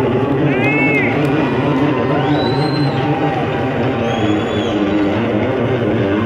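Electric bass guitar solo holding sustained low notes through an amplifier, with shouts and whistles from the audience rising and falling over it several times.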